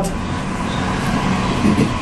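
Steady background noise, a low rumble with hiss and no distinct events, in a pause between a man's phrases, with a faint brief voice sound near the end.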